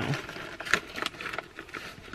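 Plastic trail-mix bag crinkling as it is handled, a few short, scattered rustles.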